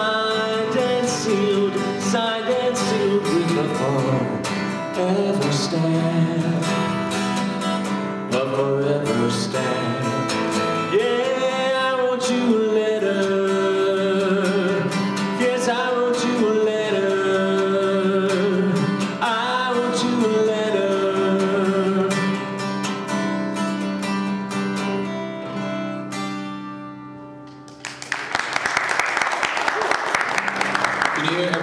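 A man singing with his own steel-string acoustic guitar accompaniment; near the end the song fades on its last notes and audience applause breaks out.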